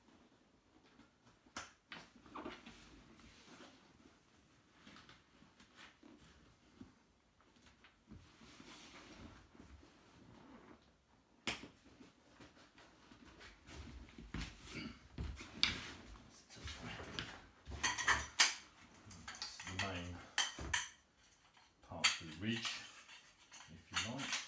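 Handling of a canvas tent on a wooden floor: fabric rustling with scattered clicks and clinks, sparse at first and busier in the second half.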